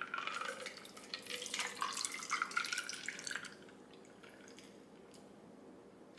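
A shaken margarita poured from a stainless steel cocktail shaker through its strainer into a glass of ice: liquid splashing over the ice for about three and a half seconds, then dying away to a faint trickle.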